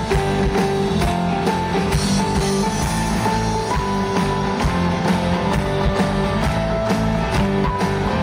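Live rock band playing an instrumental passage: strummed guitars, bass and drum kit under a sustained lead melody line.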